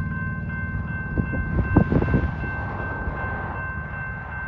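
Approaching freight train led by a GE AC4400CW diesel locomotive, its engine rumbling low and steady with a thin, steady high whine over it. A few thumps come about one to two seconds in.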